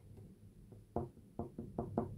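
Light knocks and clicks from handling a brass flugelhorn: a quick run of about five short taps in a second, starting about a second in.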